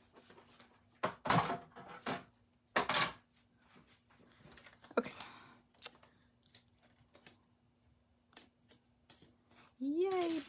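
Paper and plastic handling: a few short rustles and taps as die-cutting plates are moved aside and a die-cut cardstock ornament is worked free of its sheet.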